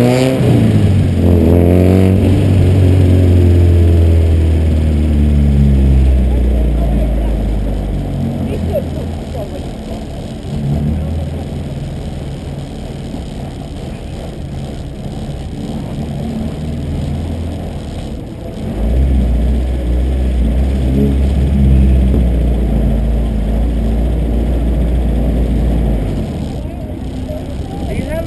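A car's engine heard through a camera mounted on its hood, pulling hard with pitch rising and falling through the gears at the end of an autocross run. It then drops to a quieter, lower drone while driving slowly, and a loud, deep drone returns about two-thirds of the way in.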